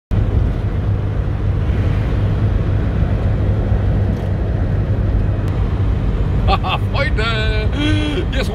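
Steady road and engine noise inside a motorhome's cab cruising at motorway speed, a low drone. A man's voice starts about six and a half seconds in.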